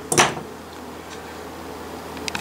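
Steel hand pliers set down on a cloth-covered bench: one brief clunk just after the start, then a steady low room hum.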